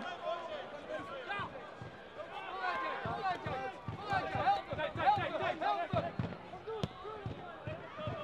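Live pitch sound of a football match: many players and spectators calling and shouting at once, overlapping and fairly faint. One sharp knock stands out near the end.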